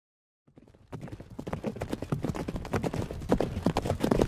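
Horses' hooves clip-clopping at a brisk pace, coming in about half a second in and growing louder as if approaching.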